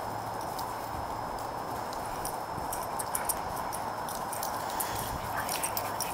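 Two dogs' paws scuffing and pattering on dry, leaf-strewn dirt as they run and play, heard as scattered light clicks and rustles over a steady background hiss.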